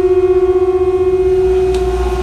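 A conch shell blown in one long, steady note that holds a single pitch.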